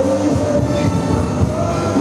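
Loud music with a heavy, steady beat and held low notes, played over the event's sound system for the dancers.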